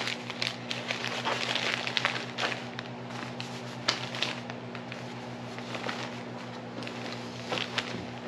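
Paper and fabric rustling and crinkling as tissue paper and a canvas tote bag are handled, busiest in the first couple of seconds and then scattered crackles, over a steady low hum.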